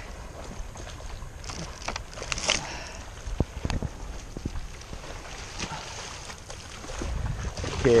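Wind buffeting the microphone with a low rumble that swells near the end, broken by a few sharp knocks about three to four seconds in.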